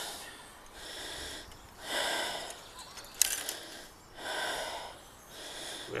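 A man breathing heavily, about four slow breaths, with a sharp click about three seconds in.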